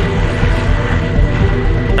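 The Concept Ice Vehicle's BMW engine and pusher propeller running at speed as the vehicle drives over snow, a loud, steady rushing noise, with background music underneath.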